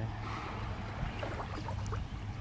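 Outdoor background noise: a steady low rumble with a faint haze of noise above it, and a few faint short sounds about a second in.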